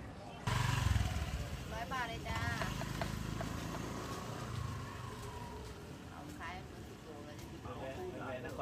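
A motorcycle engine running close by in a narrow market lane. It starts suddenly about half a second in and fades away over the next few seconds, with brief voices of people nearby.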